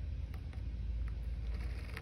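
Quiet room tone with a steady low hum and three faint soft taps from a cotton ball dabbing glitter paint in a small plastic cup while a pine cone is handled.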